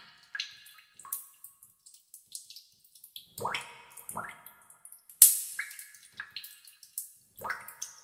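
Water dripping into pools in a cave: irregular single drops, several with a short pitched plink, the sharpest and loudest about five seconds in.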